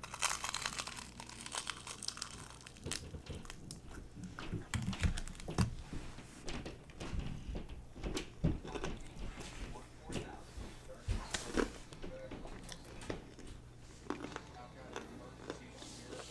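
A crunchy bite into the crispy breading of an air-fryer-reheated fried chicken drumstick, then wet chewing and mouth smacks close to the microphone. The crackling is densest in the first second or so; after that it turns into scattered irregular clicks and smacks.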